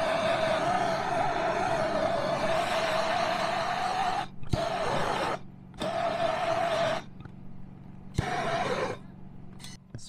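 Handheld propane torch burning with a steady hissing roar while it heat-shrinks the sealant sleeves on the submersible pump's wire splices. After one long burn of about four seconds, it is cut off and relit for three shorter bursts, some starting with a sharp click.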